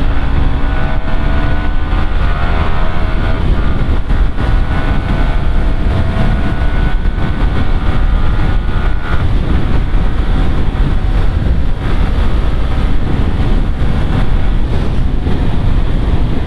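Yamaha sport motorcycle's engine pulling up through fourth, fifth and sixth gear on the road. Its note rises in pitch over the first few seconds, then is largely buried under steady wind rush on the microphone.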